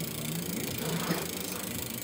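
Electric bike's pedal cranks being turned by hand, with the freewheel ticking rapidly and evenly, the ticks growing plainer near the end.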